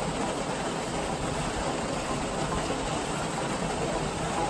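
Small waterfall pouring through a rock gap into a pool: a steady rush of falling and splashing water.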